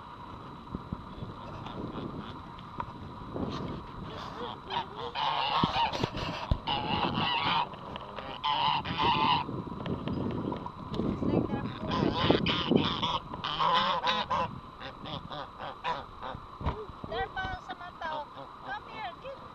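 Several domestic geese honking in repeated bouts. The loudest runs of honks come about five to seven seconds in and again around twelve to fourteen seconds in, with a few shorter calls near the end.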